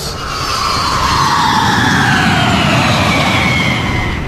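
Sound-effect whoosh: a loud rushing noise with a slowly falling pitch that eases off near the end.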